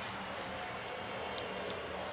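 Steady background ambience of a football stadium during play: an even wash of noise with no distinct events.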